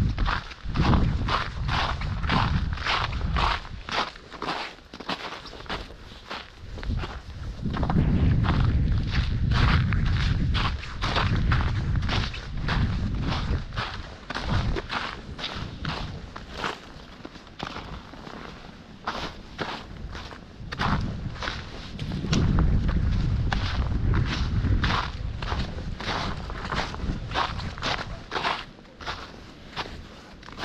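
A walker's footsteps through snow on a trodden woodland path, a steady pace of about two steps a second. Low wind noise on the microphone comes and goes in stretches.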